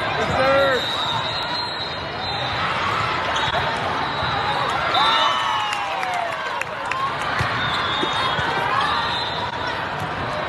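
Busy indoor volleyball tournament hall: a constant hubbub of players' and spectators' voices, with balls being struck and bouncing and sneakers squeaking on the court several times.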